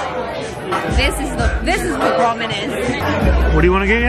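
Busy restaurant din: several voices chattering over one another, with background music whose deep bass line comes and goes.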